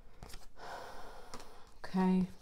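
Tarot cards being dealt onto a wooden table: soft taps and a brief sliding rustle as cards are laid down. Near the end comes a short hummed vocal sound from the reader, the loudest thing heard, held briefly at one pitch and cut off.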